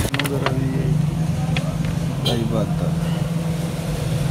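A steady low motor hum with people's voices talking faintly over it, and a few sharp clicks right at the start.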